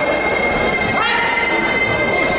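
Crowd noise in a fight hall, with spectators' shouted voices rising about a second in, over a steady high-pitched whine that holds one note throughout.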